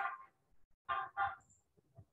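Two short, faint honks about a third of a second apart.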